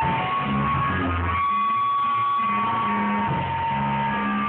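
Live band playing a song, with guitars over a moving bass line and a long held high note in the middle.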